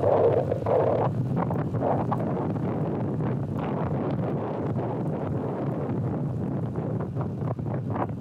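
Wind rushing over the microphone of a phone held out at arm's length while riding a road bike. The noise is steady and low, a little louder in the first second.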